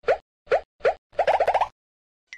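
Cartoon pop sound effects, each a short upward-sliding 'bloop': three single pops about half a second apart, then a quick run of about six in a row.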